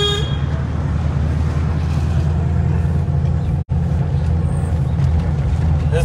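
Steady low rumble of a car's engine and road noise heard from inside the moving car. A held car-horn note cuts off just after the start, and the sound drops out for an instant a little past halfway.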